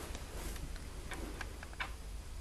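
Faint, irregular clicks and ticks over a steady low hum.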